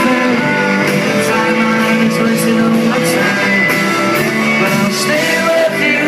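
Indie rock band playing live: electric guitars, bass and drums with regular cymbal hits, in a steady, loud full-band passage.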